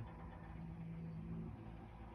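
A machine running with a low, steady hum, faint, its tone easing a little about one and a half seconds in.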